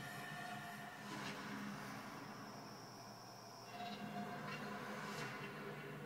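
Background music from a television playing in the room: sustained droning tones, with a high steady tone joining for a second or two in the middle.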